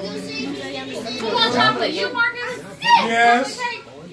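Young children's voices chattering, the words unclear, with one louder voice about three seconds in.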